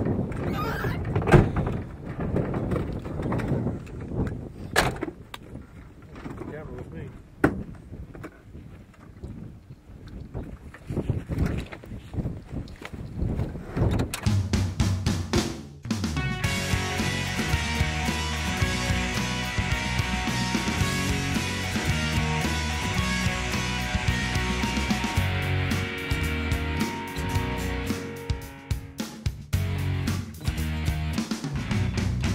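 Gusty wind on the microphone with occasional sharp knocks. About halfway through, rock music with guitar starts and carries on.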